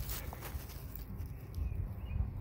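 Quiet outdoor background: a low rumble from wind on the microphone, with a sharp click at the start and a few faint ticks.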